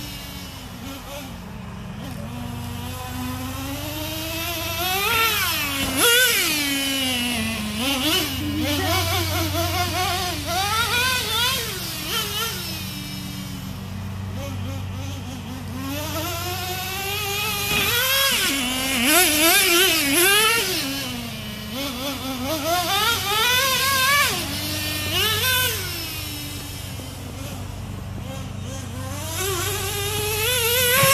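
Traxxas RC truck's small TRX 2.5 nitro engine revving as it laps, a high buzzing whine that rises and falls every few seconds as it speeds up and slows, loudest at several passes.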